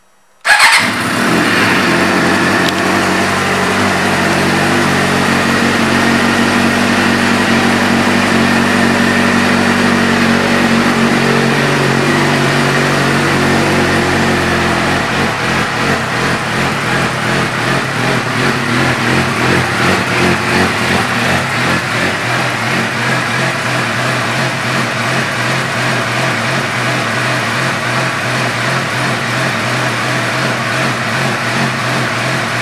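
2007 Suzuki GSX-R600's inline-four engine firing up about half a second in and idling through an aftermarket M4 exhaust. The idle holds a raised, steady pitch, then settles lower and a little uneven about halfway through.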